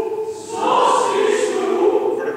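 Men's chorus singing, with a brief break just after the start and then a new chord held for over a second.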